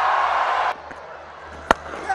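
Stadium crowd noise that cuts off abruptly less than a second in, then quieter ground ambience and a single sharp crack of a cricket bat hitting the ball near the end.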